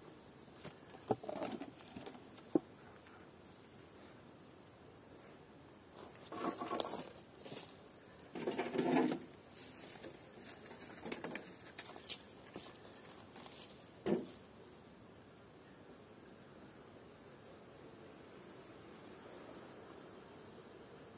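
Wooden beehive parts being handled: a few sharp knocks in the first seconds, then a spell of bumping and scraping of wood, and one more knock later on.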